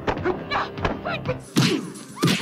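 Movie fight-scene sound effects: a rapid run of punch and kick thuds mixed with short cries, over background music. The mix changes abruptly about a second and a half in.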